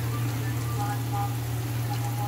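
Sliced onions and masala sizzling steadily as they fry in oil in a steel kadhai, with a constant low hum underneath.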